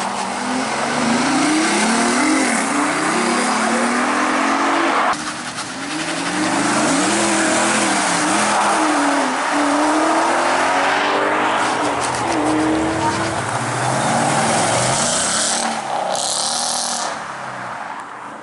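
Sports car engines accelerating hard away. The pitch climbs and drops back again and again as they change up through the gears. There is an abrupt cut about five seconds in, where another car takes over.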